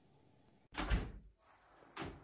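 An interior door with a lever handle being opened: a short noisy burst of handle and door movement about a second in, and a smaller one at the end.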